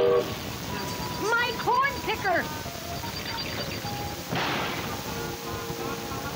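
Cartoon sound effects of a runaway wooden machine: wobbling, swooping pitched sounds about a second in, then a crash about four and a half seconds in as it smashes against a tree and breaks apart, over background music.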